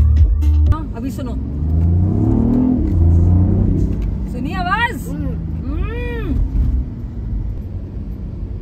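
BMW i8's turbocharged three-cylinder engine accelerating, heard from inside the cabin. Its note rises in pitch for a second or two, a grunt, over a low rumble.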